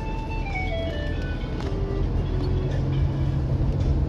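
Vehicle engine and road noise rumbling steadily, with a simple chiming tune of short notes stepping downward in pitch over it, the tune fading out after about two seconds.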